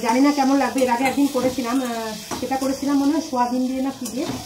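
Food sizzling in a steel pan as it is stirred with a spatula, with a woman's voice over it as the louder sound.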